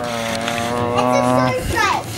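A person's voice making a long, steady engine-like hum for a toy-car ride, then a quick swooping glide in pitch near the end.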